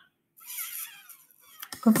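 A person's breath, about a second long, soft and breathy, followed by a brief mouth click just before speech resumes.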